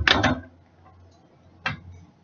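A utensil clinking against a dish: a short clatter at the start and a single click near the end, over a faint low hum.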